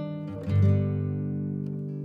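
Background music of acoustic guitar: a chord strummed about half a second in and left ringing.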